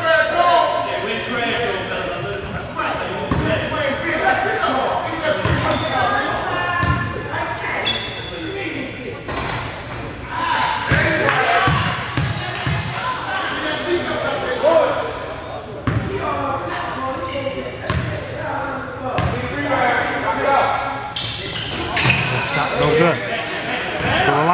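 Basketball bouncing on a hardwood gym floor during live play, with indistinct voices of players and people in the gym throughout.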